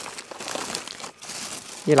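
Thin plastic shopping bag crinkling and rustling as a hand rummages through packaged groceries inside it.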